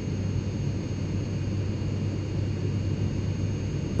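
A steady low drone like aircraft engine noise, even and unchanging, with its weight in the low rumble.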